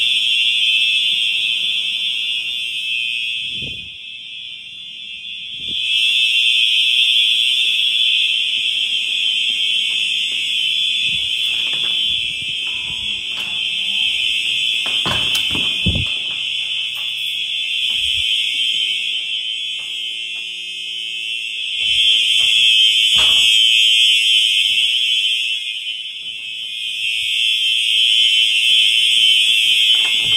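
Simplex 4903 electronic fire alarm horns sounding a continuous, unsynchronized high-pitched tone in free run during a system test. The tone grows louder and softer in turn as the listener moves past different units, and a few knocks come near the middle.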